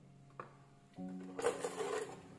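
Close handling noise, a loud, brief scraping rustle near the end, as an arm reaches right past the recording phone, over soft background music with a held note.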